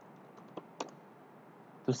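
A few faint computer keyboard and mouse clicks, the two sharpest a little over half a second in, then a man's voice begins near the end.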